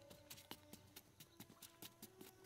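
Metal-bladed hoe chopping into soil: a quick, irregular run of sharp knocks and scrapes of blade and clods.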